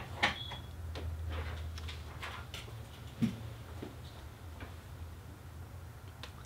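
Computer keyboard and mouse clicks, a scattered handful of short taps, as a new value is typed into a settings field, over a low steady hum.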